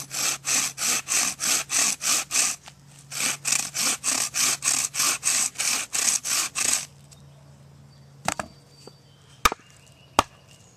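Improvised bow saw cutting through a thick branch by hand: a rasping stroke on every push and pull, about three a second, with a short break about two and a half seconds in. The sawing stops about seven seconds in, followed by a few sharp knocks.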